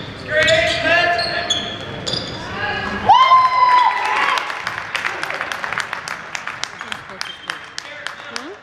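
Spectators shouting in a gym during a basketball game, with one long held yell about three seconds in. After that come a basketball being dribbled on the hardwood floor, a few sharp bounces a second, and brief sneaker squeaks.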